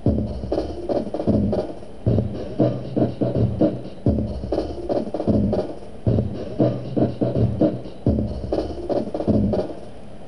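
A drum loop played back by a SunVox Sampler module, the pattern of hits repeating about every two seconds. Partway through, the sampler's sample interpolation is switched from off, which leaves the playback digitized and crackly, to cubic, which plays it smoothly.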